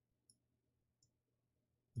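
Near silence with two faint computer mouse clicks, one about a third of a second in and one about a second in.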